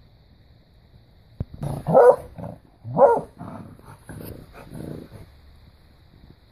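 Young beagle barking: two loud barks about two and three seconds in, followed by a few quieter ones, after a short sharp click.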